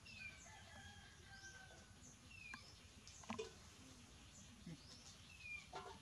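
Near silence, with faint, short high bird chirps that fall in pitch, repeating every few seconds, and a few faint light clicks.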